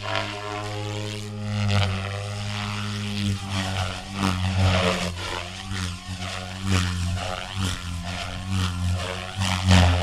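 Electric 500-size RC helicopter (SAB Goblin RAW 500) flying hard 3D aerobatics. Its rotor gives a steady droning hum whose pitch swings up and down, broken by several sharp blade whooshes. The loudest whoosh comes near the end.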